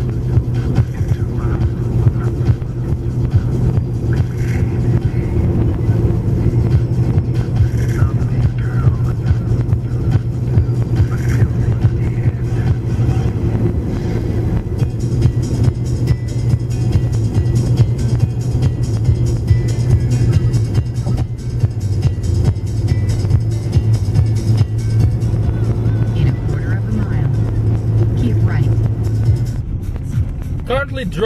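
Steady low car engine and road drone heard from inside a car at motorway speed, with background music over it.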